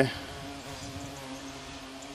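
European hornets buzzing, a steady low-pitched drone with a slight waver.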